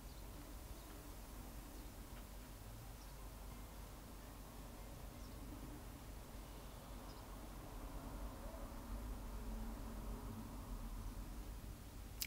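Quiet, steady background noise with a low hum and faint hiss, swelling slightly near the end.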